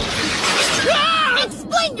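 A loud shattering crash lasting about a second, with a rising shouted voice following just after it.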